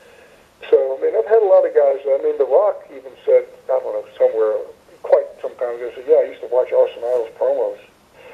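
A man talking over a telephone line, his voice thin and narrow, with short pauses between phrases.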